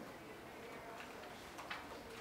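Faint quiet-room ambience broken by a few irregular, sharp clicks and taps, the loudest near the end.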